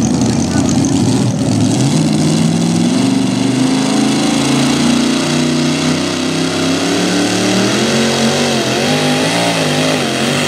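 Pro Mod pulling tractor's engine revving hard while hooked to the pulling sled, its pitch building from about two seconds in and wavering up and down near the end as the tractor starts down the track.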